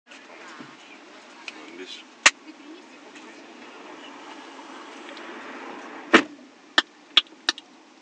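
Steady low hum inside a car's cabin, with a sharp click about two seconds in, then a louder thump a little after six seconds followed by three quick clicks.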